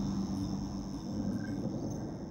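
Steady chorus of crickets chirping over a low, steady hum.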